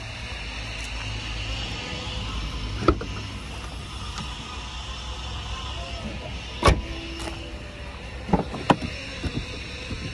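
Sharp clicks and knocks of a Volkswagen Polo hatchback's boot and rear door latches being worked as they are opened, over a steady low background noise. One click comes about three seconds in, the loudest about two-thirds of the way through, and a quick cluster follows near the end.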